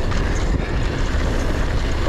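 Wind rushing over the microphone of a mountain bike's handlebar or chest camera, mixed with knobby tyres rolling over a hard-packed dirt trail, in a steady, loud rush of noise.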